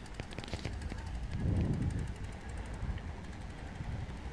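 Wind buffeting an outdoor microphone: an uneven low rumble with light crackle, swelling briefly about one and a half seconds in.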